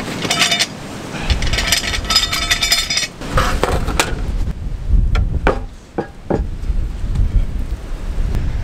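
Hand saw cutting a board in quick strokes over the first half, with wind rumbling on the microphone; then a few sharp knocks of boards being handled.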